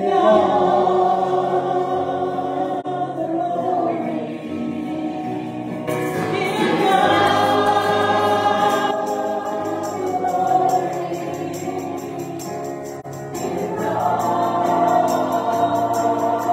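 A small group of women and a man singing a gospel song in harmony into microphones, with musical accompaniment. A light, quick percussion beat joins about halfway through.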